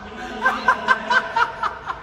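A person laughing in a quick run of short, high-pitched 'ha' pulses, about four a second.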